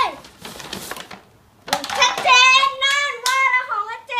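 Paper bag rustling as the gift is pulled out of its wrapping, then, after a short pause, a child's high-pitched voice in long, drawn-out calls until the end.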